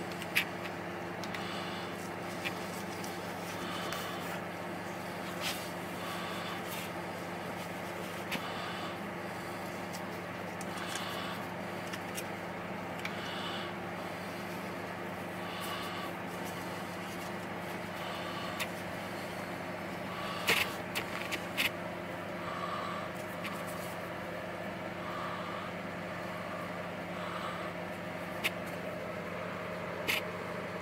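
Steady background hum from room equipment, with occasional light clicks and snips as small scissors cut open leathery ball python eggs, a quick cluster of them about two-thirds of the way through. Faint short chirps recur every couple of seconds under the hum.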